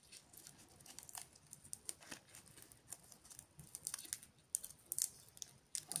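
Dry begonia seed capsules crackling faintly as fingers crumble them open over paper: scattered irregular small clicks of the papery husks, coming thicker in the second half.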